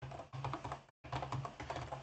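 Typing on a computer keyboard: a run of quick, irregular key clicks, with a short break about a second in.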